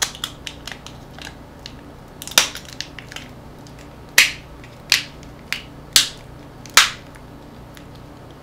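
Plastic casing of a small handheld device cracking and snapping as it is prised apart by hand: light clicks first, a loud crack a couple of seconds in, then five sharp snaps about a second apart from about four seconds in.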